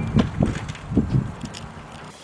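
A few soft footsteps on a gravel driveway.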